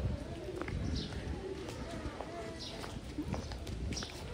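Quiet outdoor ambience: faint voices in the distance and birds calling, with a few light footstep clicks on wet brick paving.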